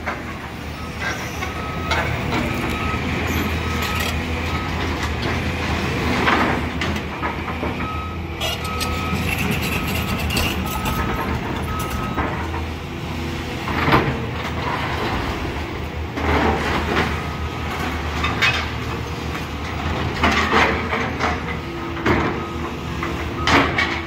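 Caterpillar demolition excavators running steadily, their diesel engines humming under a backup alarm that beeps in two short spells in the first half. Debris crunches and crashes as the grapple tears at and drops rubble, with the loudest crashes near the middle and toward the end.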